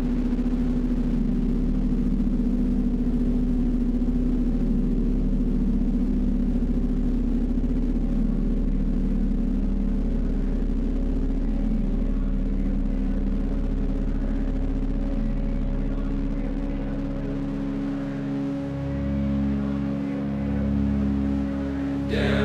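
Instrumental opening of an indie rock song: a sustained low drone of several held tones, with new held notes coming in near the end.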